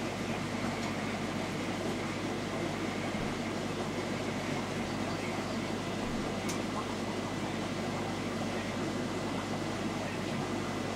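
Air-driven aquarium moving bed filter running: a steady hum from the air pump under the noise of air bubbling up through the ceramic media in the water.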